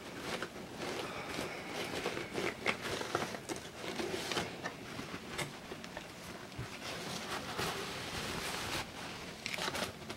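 Packing material rustling and crinkling as hands dig through a cardboard shipping box: a plastic bag, paper towels and newspaper being handled, with many small irregular crackles and scrapes.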